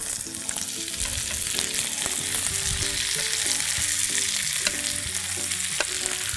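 Butter and chopped garlic sizzling steadily in a hot frying pan as mixed vegetables are pushed in from a plate with a wooden spatula.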